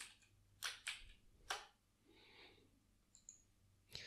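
Three faint, sharp computer clicks within the first second and a half, made while selecting cell ranges in a spreadsheet dialog; otherwise near silence.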